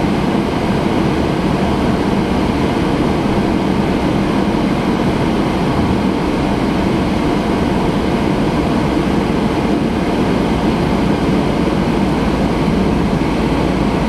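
Steady road and engine noise of a car driving at speed, heard from inside the cabin: an even, low-pitched noise with no distinct events.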